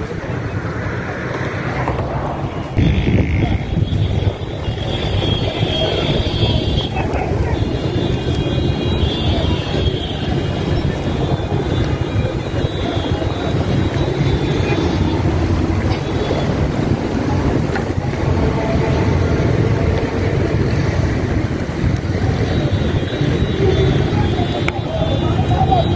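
Street noise on an outdoor phone recording: wind rumbling on the microphone over traffic and voices, getting louder about three seconds in.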